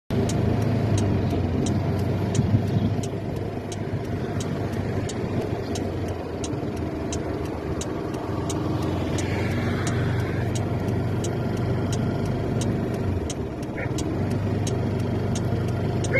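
Car engine and road noise heard from inside the cabin, driving at low speed, steady throughout. A light, regular ticking runs over it at about three ticks a second.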